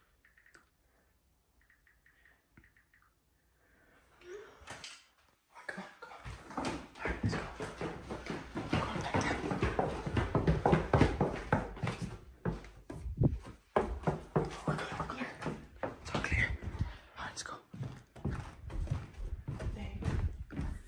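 Near silence for the first few seconds, then hurried footsteps thudding down wooden stairs, a fast irregular run of knocks mixed with the rustle and bumps of a handheld phone camera.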